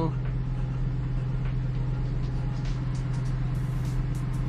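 Lamborghini Huracán Evo's V10 engine idling: a steady low hum over a faint rumble, unchanging throughout.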